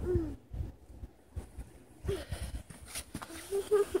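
A small child's short, soft whimpering sounds: one falling whimper at the start, another about two seconds in, and a few brief ones near the end, with quiet in between.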